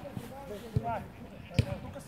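Football being kicked on the pitch: two dull thuds, a lighter one just under a second in and a harder one near the end, with players' voices calling across the pitch.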